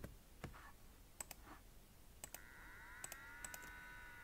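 Faint, scattered clicks of a computer mouse and keyboard, about a dozen in all, several in quick pairs. About halfway through, a faint steady tone of several pitches comes in and holds.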